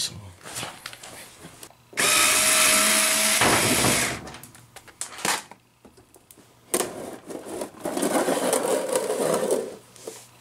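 Cordless drill/driver running for about a second and a half, backing a mounting screw out of a plastic condensate pump tank. Later a longer rough scraping, rubbing noise as the plastic pump tank is handled and shifted.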